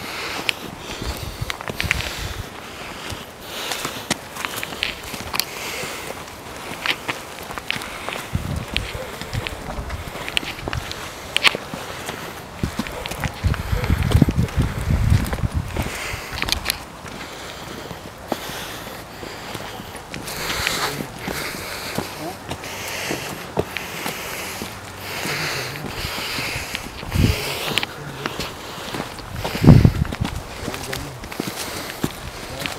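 Several people's footsteps scuffing along a dirt trail, with crunching of dry leaves and brush. There is a low rumble around the middle and a sharp thump near the end.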